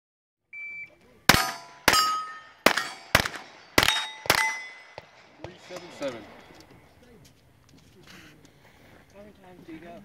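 A shot timer's start beep, then six pistol shots in about three seconds, each followed by the ring of a struck steel plate.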